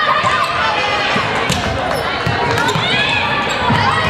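Sounds of an indoor volleyball rally: the ball being struck and players' shoes squeaking on the hardwood gym floor, with players calling out.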